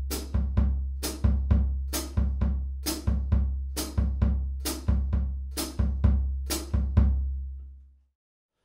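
Drum kit playing a bossa nova groove: the bass drum feathered softly to follow the bass line rhythm, under cross-stick clicks on the snare and ringing cymbal strokes. A steady low bass sound runs underneath, and the playing cuts off suddenly at the end.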